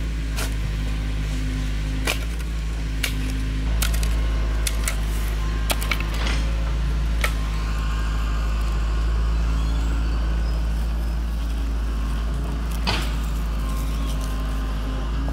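An engine running steadily at idle, a low drone with a constant pitch. Over it come scattered sharp clicks and scrapes of a metal shovel and hands working stony soil, most in the first half.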